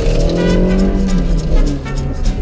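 Honda CRX engine running under load during an autocross run, heard from inside the cabin, mixed with background music.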